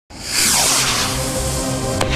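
Electronic synthesizer music starting up: a whooshing sweep that falls in pitch over the first second, over held synth notes and a low bass.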